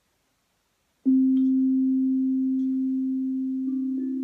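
GANK steel tongue drum struck once with a mallet about a second in: one low note that rings on and slowly fades, with a second, softer note joining near the end.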